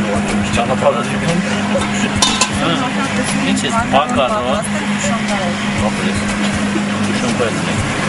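Several people talking in a group outdoors over background music, with a steady low hum underneath.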